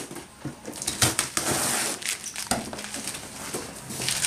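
Cardboard box being torn and pulled open by hand: irregular crackling and scraping of cardboard flaps, with one longer rasp about a second in.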